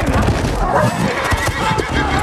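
Horses whinnying over the thud of galloping hooves in a film battle's sound mix.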